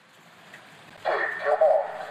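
A hushed pool, then about a second in the starter's call to take marks rings out over the pool's loudspeakers.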